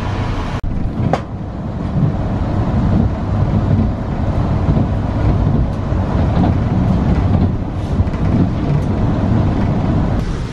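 Inside a moving local train carriage: the steady rumble and rail noise of the train running, with a brief dropout just over half a second in.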